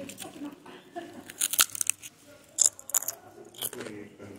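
Crisp, irregular crackling and rustling from cloth being handled close by, in two clusters about a second and a half and about three seconds in.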